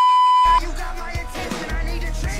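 A loud, steady high beep that cuts off abruptly about half a second in, followed by music with a steady beat.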